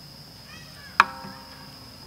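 Crickets chirping as a steady high trill. About a second in, a single sharp knock rings briefly with several fading tones.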